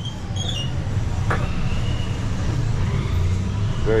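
Steady low rumble of street traffic, with one brief knock about a second in.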